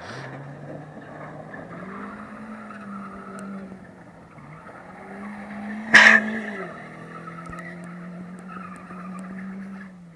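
1994 Toyota Corolla doing donuts: engine held at high revs, the revs rising and dipping, with its tyres squealing and skidding on the tarmac. A single sharp bang about six seconds in is the loudest moment.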